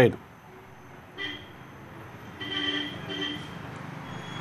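Faint street traffic with a vehicle horn tooting three times: a short toot about a second in, then a longer one and a quick one near the end.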